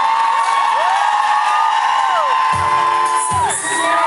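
Concert crowd screaming and whooping: many high voices glide up and down, one scream held for about three seconds. About two and a half seconds in, a brief low note from the stage sounds under the screams.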